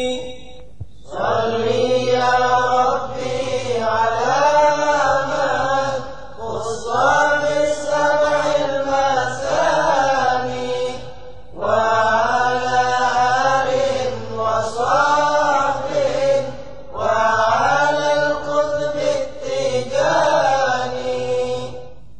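Male voice chanting an Arabic Sufi devotional poem (a Tijani qasida) in long, wavering melodic phrases of a few seconds each, with short breaths between them.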